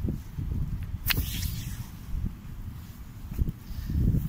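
Strong wind buffeting the microphone: an uneven low rumble that rises and falls in gusts, with a brief sharp rustle about a second in.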